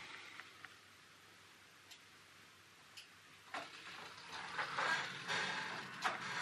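A quiet room with a few faint clicks. From about halfway, louder clicking with a rising high hiss as the automatic roller door of an OO-gauge model engine shed is driven open.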